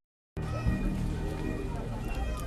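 Dead silence for about a third of a second, then a film soundtrack bed of steady, sustained high tones with fainter wavering sounds underneath.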